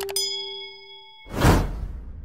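Subscribe-button sound effects: two quick mouse-style clicks, then a bright ding that rings out for about a second over the last fading note of the music. About a second and a half in comes a loud whoosh, the loudest sound here, which fades away.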